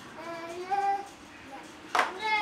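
A young child singing in drawn-out, high, gliding notes, with a sharp click near the end.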